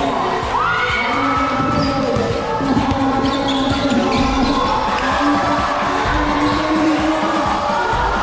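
Basketball game sounds on an indoor court: a ball bouncing on the floor and sneakers squeaking in short high squeals, over a steady din of spectators shouting and cheering.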